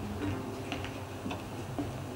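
Light clicks and knocks as a classical acoustic guitar is picked up and handled.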